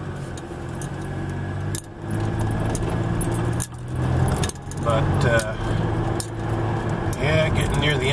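Inside a moving car: a steady engine and road hum, with frequent light clicks and rattles from inside the cabin.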